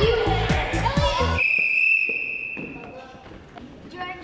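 Music with a beat and children's voices, cut off about a second and a half in. A single steady blast on a sports whistle follows, held about a second and fading out in the hall.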